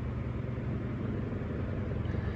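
A steady low mechanical hum with a constant airy hiss over it, unchanging throughout.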